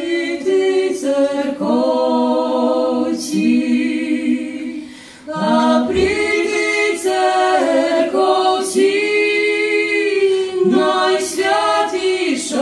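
A Lemko folk trio, a man and two women, singing a traditional song a cappella in close harmony, in long held phrases with a short break between phrases about five seconds in.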